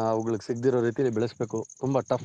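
A man speaking, with a steady, evenly pulsing high chirring of insects behind the voice.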